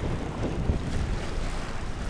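Steady wind noise buffeting the microphone, a low, even rush with no distinct events.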